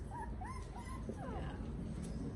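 Puppies whimpering: several short, high whines that rise and fall, in the first second and a half.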